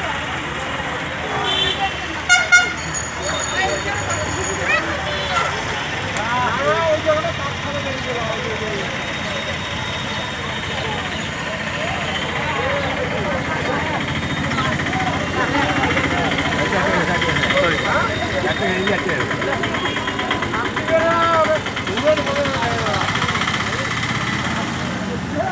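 Road traffic with a vehicle horn honking briefly about two seconds in, and voices talking in the background throughout.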